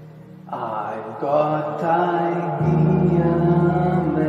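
Digital keyboard playing slow, sustained chords: a held chord fades, new chords come in about half a second in, and a deep bass note joins at about two and a half seconds.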